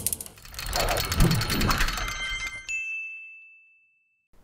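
Logo-intro sound effect: a run of rapid high ticks with a few low thuds, ending about two and a half seconds in on a bright, bell-like ding that rings on and fades away.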